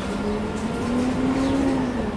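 A vehicle running with a low rumble and a steady engine tone that rises slightly in pitch, then eases back down near the end.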